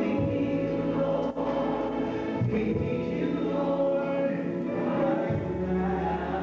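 Gospel song playing: choir voices holding long notes over a low sustained bass that changes note a couple of times.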